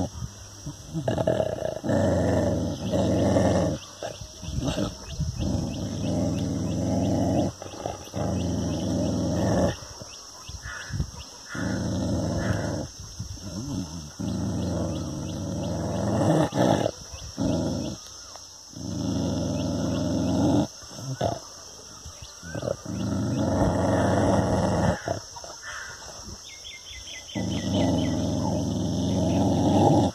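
A dog growling at its own reflection in a mirror, in repeated low bouts of a few seconds each with short breaks between them.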